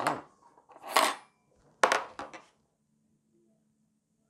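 Metal kitchen fork being handled on a tabletop: two short scraping rustles, then a sharp clink a little under two seconds in, followed by two lighter taps.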